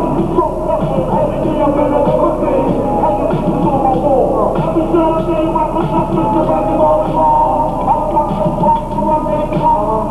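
Hip-hop music played loud through a concert PA, with rappers performing live into microphones over the backing track.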